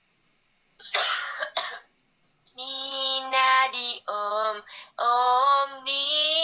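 A short cough-like burst about a second in, then a woman singing in a high voice with long held notes, broken by short gaps, from about two and a half seconds on.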